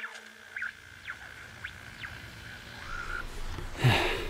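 Car radio being tuned between stations: a faint hiss with a steady whine and several brief whistling sweeps as the dial turns. A louder rush of noise rises near the end.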